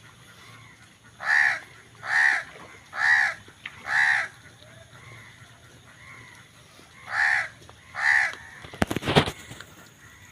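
An animal's harsh calls, each under half a second: four about a second apart, a pause, then two more, with fainter calls of the same kind in between. A short burst of crackling clicks near the end.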